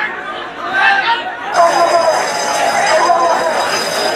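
Crowd of many people talking and calling out at once, an overlapping chatter of voices; the sound changes abruptly about a second and a half in.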